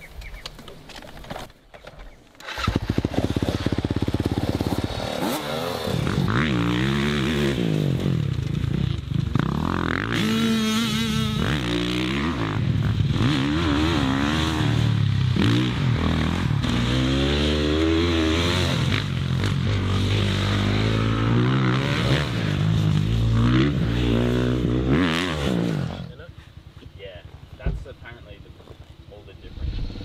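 Motocross dirt bike engine revving hard, its pitch rising and falling over and over as the rider accelerates and shifts through corners. It starts about two and a half seconds in and drops away a few seconds before the end.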